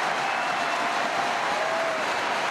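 Stadium crowd cheering and clapping steadily, celebrating a home goal.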